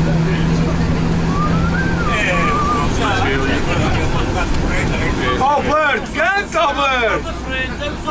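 Coach engine running with a steady low hum under the passengers' chatter; about five seconds in, several loud voices with swooping pitch break out together.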